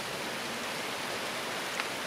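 Steady rain falling, an even hiss, with a faint tick near the end.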